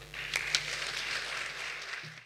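Audience applause in a hall, beginning just after the start.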